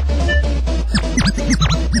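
Old skool house DJ mix playing loud over a steady, heavy bass line. A quick run of short falling pitch sweeps comes thicker toward the end.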